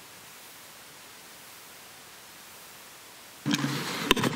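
Steady faint hiss from the meeting's audio feed. About three and a half seconds in the level jumps suddenly as a microphone comes on, bringing in a low hum and room noise.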